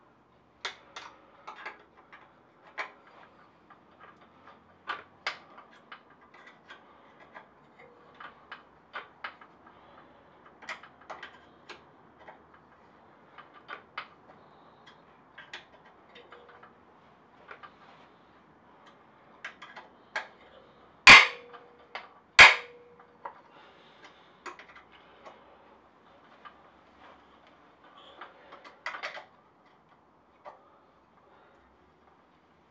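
Hand tools and metal parts being handled on a motorcycle frame: irregular light clicks and taps. About two-thirds of the way through come two loud, sharp metal knocks about a second and a half apart, the second one ringing briefly.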